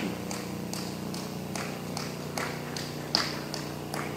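A light tick repeating evenly about two and a half times a second, one a little louder about three seconds in, over a steady low hum.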